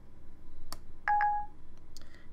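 Siri's stop-listening chime from the device's speaker: a short electronic beep about a second in, just after a faint click, as Siri stops listening to the spoken command.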